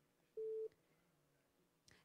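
A single short beep from a desk telephone, one steady tone about a third of a second long, as a caller's line is picked up. Otherwise near silence.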